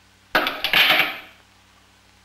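Polished metal magnetic pieces, cylinders and a ball, snapping together and clattering against each other as an added magnet makes the whole structure rearrange. It is a quick burst of metallic clicks and clinks starting about a third of a second in and dying away within about a second.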